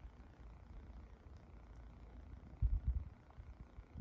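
Quiet outdoor background with a brief low rumble on the microphone about two and a half seconds in.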